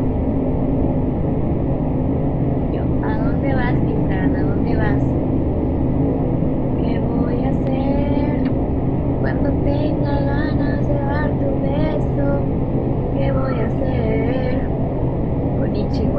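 A woman talking softly in Spanish, in short phrases, over a steady low droning hum that runs throughout.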